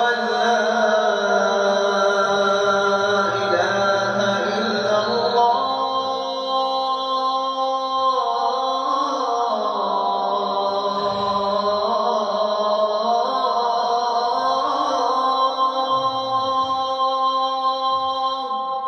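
A man chanting ruqya recitation in long, drawn-out melodic notes. The notes ring on and overlap, with no breaks for breath.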